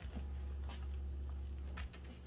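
A pair of fleece-covered sneakers being handled: soft scratchy rubbing with a few light taps, over a steady low hum.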